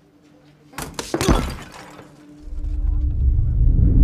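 A sudden crash of something smashing, several sharp impacts with breaking and shattering debris, loudest just over a second in. About two seconds later a deep low rumble of film score swells up and builds.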